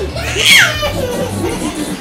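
A toddler's excited squeal about half a second in, sliding down in pitch, over background music.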